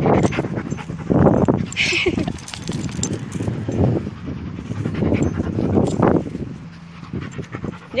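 Dog panting close to the microphone, with scattered small clicks.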